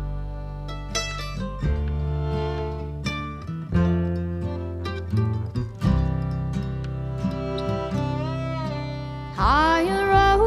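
Acoustic string band playing a slow waltz: mandolin picking, fiddle, upright bass and acoustic guitar, with the bass moving note by note about once a second. Near the end a woman's voice comes in singing.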